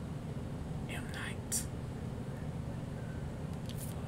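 A man whispering softly under his breath, heard as a few short hissy sounds about a second in and again near the end, over a steady low room hum.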